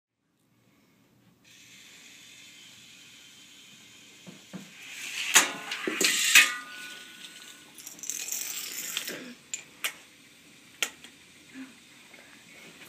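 A homemade Rube Goldberg machine built from toys running: plastic and wooden parts clattering and rattling, loudest in a burst about halfway through, a rattle a little later and sharp single clicks near the end, after a short silence at the start.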